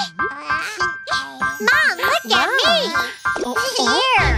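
Children's cartoon soundtrack: a high, childlike character voice sliding widely up and down in pitch over a tinkling, jingly music bed.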